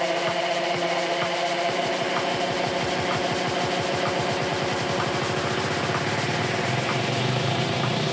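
Live techno: a sustained synth drone over regular hi-hat ticks, with a low pulse that quickens into a fast roll through the middle and settles into a steady low tone near the end.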